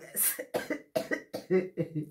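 A woman coughing into her hand: a fit of short coughs in quick succession, several a second.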